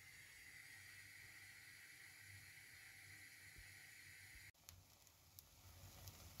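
Near silence: faint steady room hiss. After a cut about four and a half seconds in, faint crackling of flour-and-egg-coated celery slices frying in oil in a pan.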